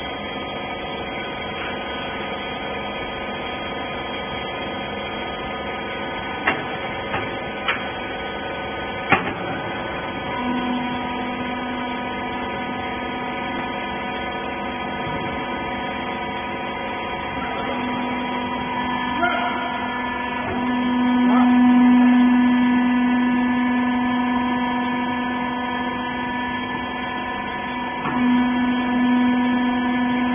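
Hydraulic wiper-rag baling machine running: a steady motor-and-pump hum with a few short clicks in the first ten seconds. About ten seconds in, a louder steady whine joins as the machine works through its press cycle, swelling to its loudest a little past the middle.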